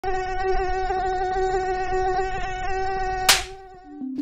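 Mosquito buzz sound effect: a steady high-pitched whine for about three seconds, ended by a single sharp slap, after which the buzz fades out faintly.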